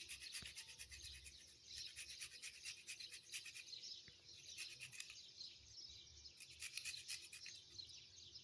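A fresh strawberry being grated on a metal hand grater: faint, rapid scratchy strokes in runs, with short pauses between them.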